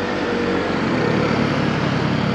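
A motorcycle engine running steadily while riding, under a constant rush of wind and road noise on the rider's microphone.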